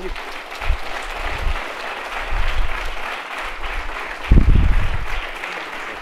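Audience applauding steadily, with several low thuds mixed in, the loudest a little over four seconds in.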